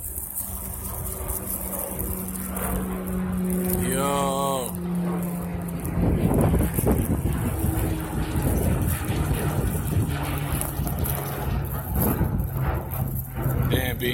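Engine drone of a small aircraft flying overhead, a steady hum that drops in pitch partway through as it passes. Wind rumbles on the phone's microphone through the second half, and a brief voice is heard about four seconds in.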